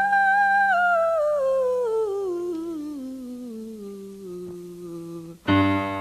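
A wordless female vocal note in a pop song, held high and then sliding down step by step over several seconds while it fades, above a low sustained chord. Near the end a loud full chord with piano comes in.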